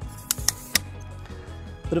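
Three sharp clicks in quick succession from an aluminium Slik Sprint Pro tripod as its legs and fittings are worked to fold it up, over steady background music.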